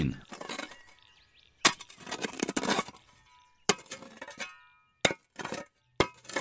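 A metal digging tool strikes hard ground three times, each strike followed by a short scrape through soil. A brief metallic ring follows the second strike.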